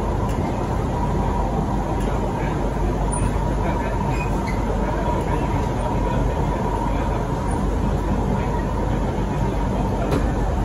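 Siemens C651 metro train running at speed, heard from inside the carriage: a steady rumble of wheels on track with a faint steady high tone.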